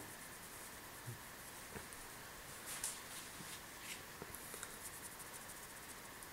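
Faint rubbing of a cotton pad wiping a steel knife blade, with a few light scratchy strokes about three and four seconds in.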